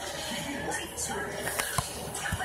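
Television sound in a small room: speech over music, with a sharp knock near the end.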